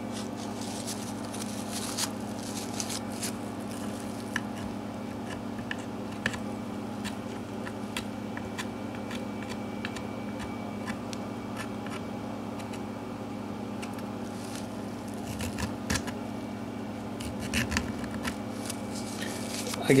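Light scrapes and scattered small ticks of a blade and paper towel working old hide glue off an acoustic guitar's neck dovetail, over a steady low hum.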